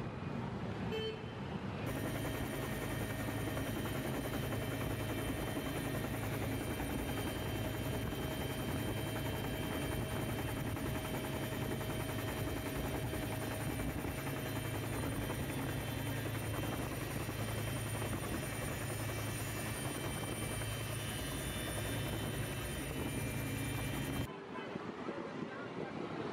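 Helicopter rotor and engine noise heard from inside the open cabin door during a winch rescue: a loud, steady, unbroken din with a constant low hum. It cuts in about two seconds in, after a brief quieter street sound.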